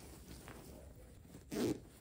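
The zipper of a woven fabric IKEA Söderhamn sofa cushion cover being worked by hand, with the fabric rustling. There is one short, louder burst about three quarters of the way through.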